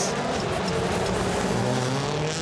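Hyundai i20 N Rally1 rally car's turbocharged four-cylinder engine running as the car drives past, steady in level over a wash of background noise.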